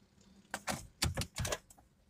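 A quick, irregular run of sharp clicks, about six within a second, in the car's cabin as the ignition is switched on for the instrument-needle sweep.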